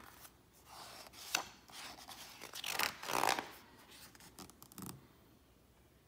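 A picture book's paper page being handled and turned: soft rustling and rubbing of paper, with a sharp tap about a second and a half in and a louder rustle about three seconds in.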